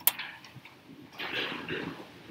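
A single sharp click right at the start, followed about a second later by a short stretch of indistinct voice.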